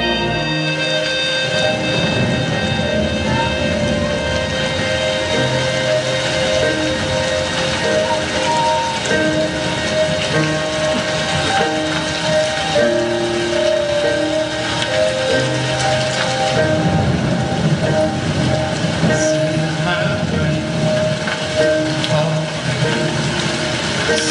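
Recorded rain and thunder sound effects, a steady downpour, mixed with slow held music notes in a dance soundtrack.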